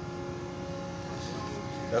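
Steady machinery hum from ships in port: several constant tones over a low, even rumble, with no change in pitch or level.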